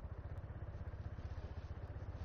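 Scooter engine just started and idling quietly with a fast, even low pulse.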